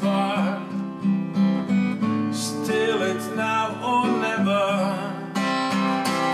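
Acoustic guitar strumming chords steadily in an instrumental passage of a folk-pop song.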